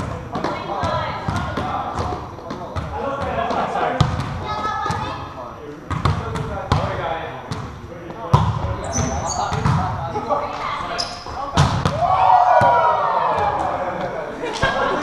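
Indoor volleyball rally: players calling and shouting to each other, with sharp slaps of the ball being hit every second or two. A long, loud call comes near the end.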